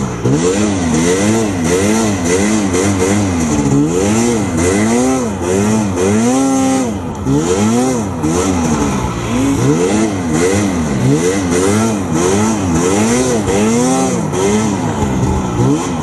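Arctic Cat M6000 snowmobile's two-stroke engine revving up and down over and over, about once a second, as the throttle is worked under load in deep snow, with one longer, higher climb about six and a half seconds in.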